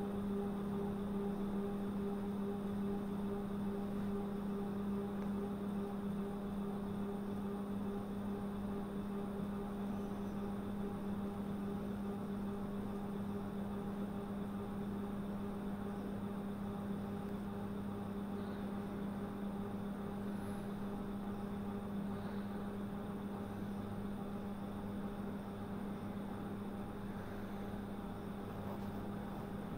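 Steady drone inside a moving bus: engine and road noise under an even low hum.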